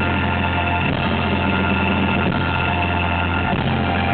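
Live rock band holding a sustained droning chord: electric guitar and bass ring on steady notes with no drumbeat.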